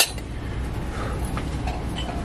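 Small brass and steel utensils clinking in a metal shelf tray as one is set back among them: a sharp clink at the start, then a few faint ones, over a steady low background hum.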